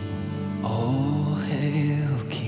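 Slow live worship music: a sustained keyboard pad with acoustic guitar, and a man's voice entering about half a second in with a soft, wordless sung melody that glides between notes.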